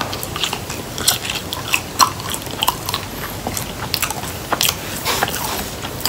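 A person biting into and chewing french fries, a scatter of short irregular clicks from the mouth.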